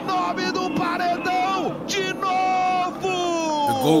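Brazilian Portuguese TV football commentator's long, drawn-out shout of the goalkeeper's name after a penalty kick, held on high steady notes in several long stretches and falling in pitch near the end.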